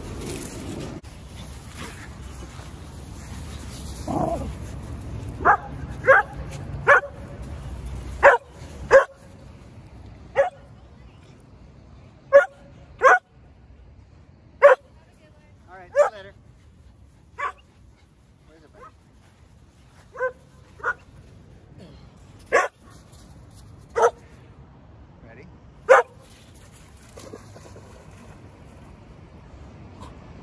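Rough Collie barking close by: about sixteen short, sharp single barks at irregular intervals, roughly one a second. They start about five seconds in and stop a few seconds before the end.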